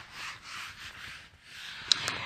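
Whiteboard eraser rubbing across a whiteboard in repeated quick strokes that fade out about halfway through, followed by a short click near the end.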